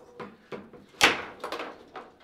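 Table football in play: a quick series of sharp knocks as the ball is struck by the rod figures and clacks off the table. The loudest knock comes about a second in.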